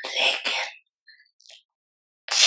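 An elderly woman clearing her throat once, briefly, close to a microphone.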